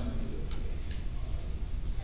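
A few faint, short clicks over a steady low hum and room noise.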